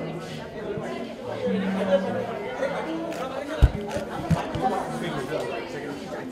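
Several people chattering at once in a large, reverberant room, with no single voice standing out. Two short low thumps come about midway, the first the loudest sound.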